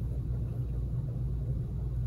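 A steady low hum with no speech or music over it.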